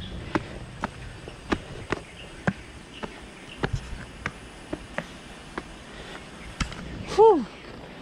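Footsteps of canvas sneakers on a stone-paved path, sharp steps about two a second. About seven seconds in, a short voice sound from the walker that rises and falls in pitch.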